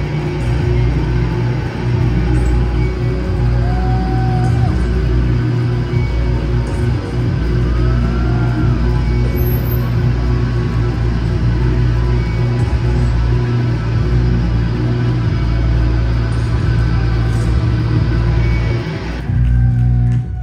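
Live hardcore/noise-rock band's amplified guitars and bass holding a loud, steady droning wall of distorted noise and feedback without a clear drum beat. It cuts off about a second before the end.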